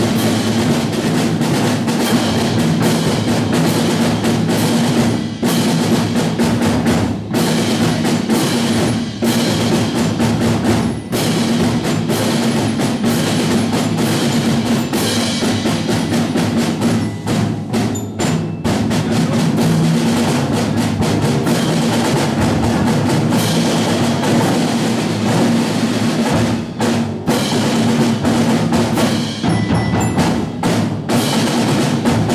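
Student percussion ensemble playing a percussion quintet: marimbas and xylophones over snare drums, with tubular bells ringing. A busy stream of struck notes carries on without a break.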